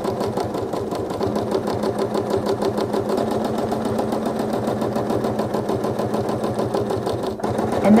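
Quilting machine stitching free-motion at a steady speed: a fast, even run of needle strokes over the motor's hum.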